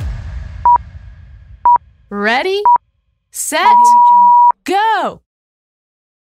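Interval timer countdown beeps: three short beeps about a second apart, then one long beep of the same pitch marking the end of the exercise interval. Short voice-like sliding sounds come between the beeps.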